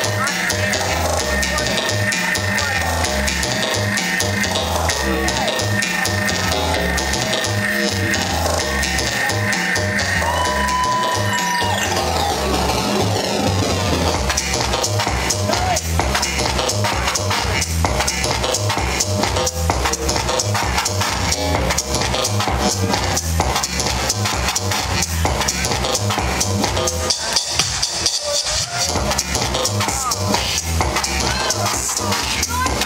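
Electronic dance music from a live DJ mix, played loud over a sound system, with a steady, evenly repeating kick-drum beat.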